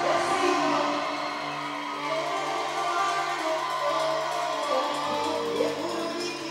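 Live band music played on drum kit and electric guitar, with a singing voice over it.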